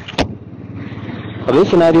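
Muffled motorcycle riding noise, engine rumble and wind, picked up by a Jabra Elite 85t earbud microphone inside a closed full-face helmet, with a sharp click about a quarter second in. A man starts speaking near the end.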